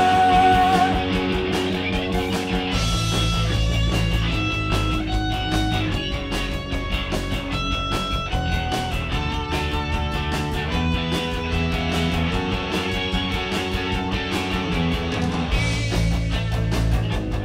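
Live rock band in an instrumental passage: an electric guitar picks a melody of distinct sustained notes over a steady bass and drums with cymbal hits. A held sung note trails off about a second in.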